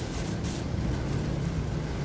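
Bubble wrap and cardboard rustling briefly at the start as a box is packed and its flaps folded shut, over a steady low background rumble.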